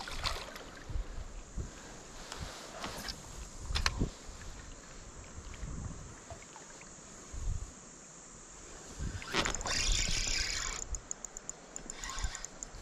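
Water splashing and sloshing in a shallow river around a wading angler, with scattered knocks and a louder rush of noise about nine seconds in that lasts over a second.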